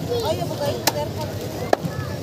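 Two sharp chops, a little under a second apart, of a large knife cutting through a trevally (bubara) on a wooden chopping block, with voices chattering in the background.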